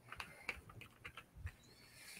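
Faint, irregular clicks and light knocks over quiet room tone.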